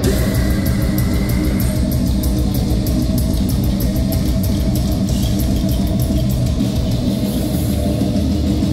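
Live metalcore band playing loud: distorted electric guitars and bass guitar over drums, with rapid, evenly spaced cymbal hits.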